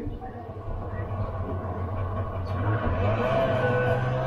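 A steady, engine-like low drone that grows louder and steps up in pitch about three seconds in.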